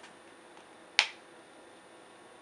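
A single sharp plastic click about a second in: a nebuliser face mask snapping onto the plastic nebuliser chamber. A much fainter tick comes at the very start.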